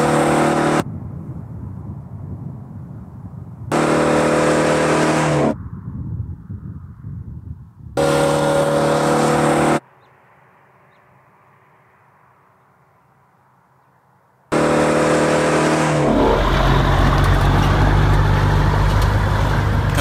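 Road vehicle engines in short clips that cut in and out abruptly: a steady engine drone alternating with quieter road and wind noise, and a quiet gap a little past halfway. About four seconds from the end, the deeper, louder drone of a truck hauling a livestock trailer takes over.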